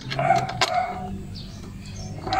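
A bird calling a few short, flat notes in the background. A single light click about half a second in comes from the metal step-grill bracket being handled.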